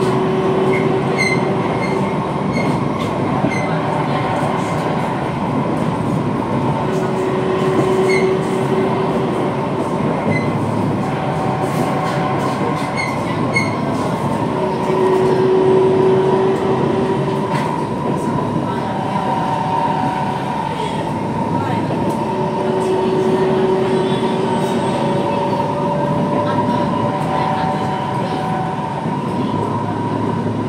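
Inside a C151 metro train car with Mitsubishi GTO-chopper traction, running between stations: a steady rolling noise of wheels on rail, with electric traction hums that fade in and out every few seconds.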